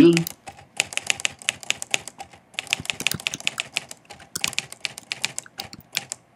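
Rapid typing on a laptop keyboard, a quick run of key clicks with a couple of short pauses: an email address being typed.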